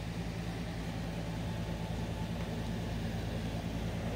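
Steady low hum with faint hiss, unchanging throughout: background room noise with no distinct events.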